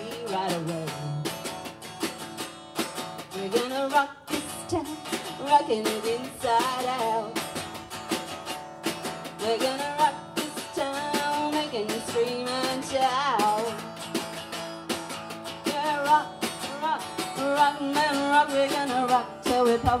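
Live band playing a rock-and-roll number: an acoustic guitar strummed in a driving rhythm over a drum kit with snare and cymbal hits.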